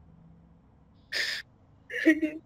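A crying young woman's sharp, sobbing intake of breath, heard once a little past a second in.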